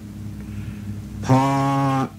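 A man's voice holding one drawn-out syllable at a steady pitch from about a second in, after a low steady hum with no words.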